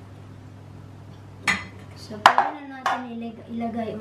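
Three sharp clatters of a spatula and plastic parts knocking against a countertop blender jar as batter is scraped in. They come about a second and a half in, then twice more within the next second and a half, the middle one loudest.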